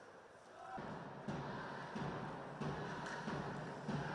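Faint ice hockey rink sound: indistinct voices and a few knocks of sticks and puck during a scramble at the net, growing louder about a second in.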